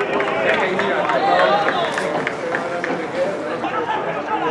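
Several voices shouting and calling over one another on and around an amateur football pitch, with a few short sharp knocks among them about halfway through.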